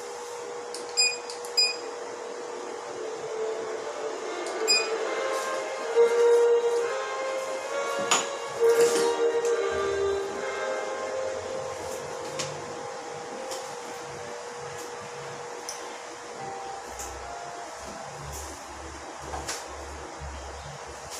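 Background music over a steady hum, with three sharp metallic clinks that ring briefly in the first five seconds, from metal dental instruments being handled.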